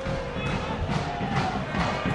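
Football supporters in the stands singing a sustained chant, heard faintly over a low rumble.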